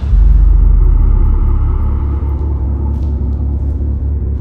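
A deep, loud rumble that swells sharply just after the start and then eases back to a steady low drone.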